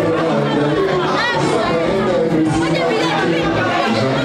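Many people chattering at once over music, with no single voice standing out.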